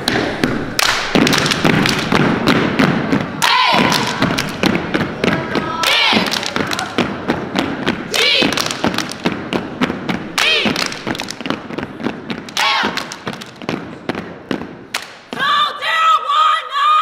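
A step team stepping: rapid rhythmic stomps on a hardwood gym floor, mixed with hand claps and body slaps, and several shouted chanted calls.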